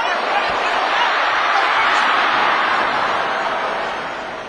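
Arena crowd cheering and shouting during a sumo bout, a dense roar of many voices that swells loudest about two seconds in and fades toward the end.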